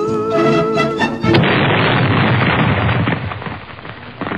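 Music with wavering, held tones breaks off suddenly about a second and a half in, replaced by a loud explosion-like boom that rumbles on and fades over the last two seconds.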